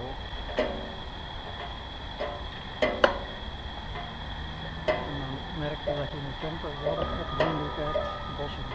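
Faint, indistinct chatter of people in a hot-air balloon basket, in short snatches that grow busier in the second half, over a thin steady high-pitched tone.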